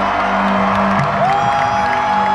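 Arena concert intro music with a steady low held note over a crowd cheering. About a second in, a long whistle rises in pitch and is held.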